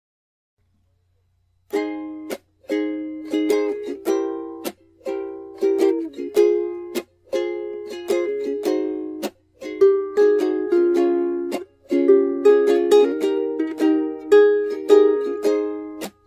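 Instrumental introduction to a hymn: chords strummed and plucked on a small steel- or nylon-strung instrument such as a ukulele, about two strokes a second, each ringing and fading. It starts about two seconds in, after silence.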